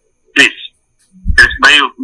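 A man's voice over a phone line speaking a few short, clipped words, with a short low rumble under the second word.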